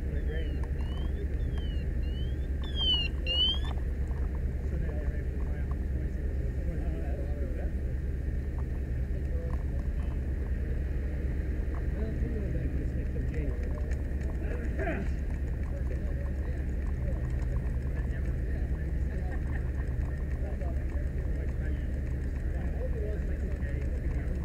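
Fire apparatus diesel engine running steadily as a constant low hum, with a warbling electronic tone that rises and falls about twice a second for the first three or four seconds.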